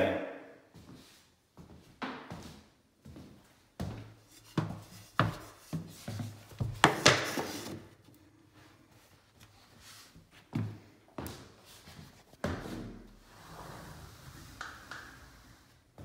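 A length of wooden baseboard being handled and fitted into a room corner: a string of irregular knocks and thunks, the sharpest about seven seconds in.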